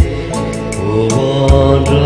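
Afghan classical music: a pitched melodic line gliding and holding over low drum strokes, one at the start and another about a second and a half in.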